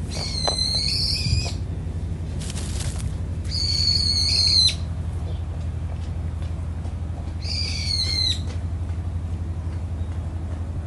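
A bird calling three times, each call a high whistle about a second long that drops at the end, over a steady low hum.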